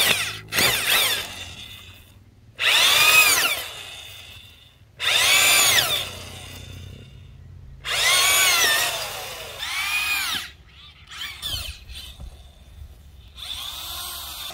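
Power drill turning a garden auger bit to bore planting holes in soil. It runs in about six bursts of a second or so, with shorter ones near the end, and the motor whine rises and then falls in each burst as it spins up and winds down.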